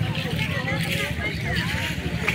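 Babble of many people talking at once in an outdoor crowd, no single voice standing out, over a steady low rumble.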